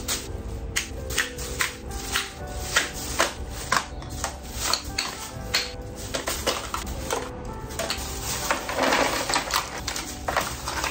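Plastic makeup compacts, tubes and cases clattering as they are dropped one after another into a plastic carrier bag, many light clicks at irregular intervals, with a longer rustle of the bag near the end. Background music plays underneath.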